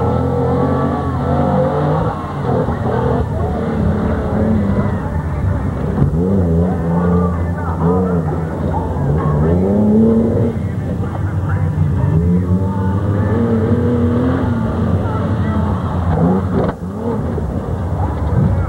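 Pickup truck engine revving in repeated rising and falling surges as it drives through deep mud.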